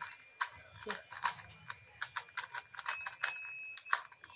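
A 2x2 Rubik's cube being turned fast by hand, its plastic layers clicking in quick, irregular clacks. A thin steady high tone sounds for nearly a second about three seconds in.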